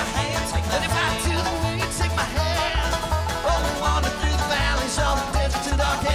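Live bluegrass band playing an instrumental break without singing: banjo and acoustic guitars picking over an upright bass walking a steady, bouncing bass line.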